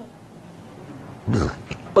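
Quiet room tone through a microphone, broken about a second and a quarter in by one short, low throaty sound from a man close to the microphone, then a couple of faint clicks.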